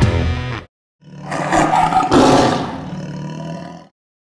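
Rock backing music cuts off, and after a brief gap a lion's roar sound effect swells, peaks and fades away over about three seconds.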